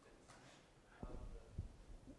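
Near silence with a faint, distant voice: an audience member asking a question off-microphone. About a second in, a low rumble starts, with a soft thump shortly after.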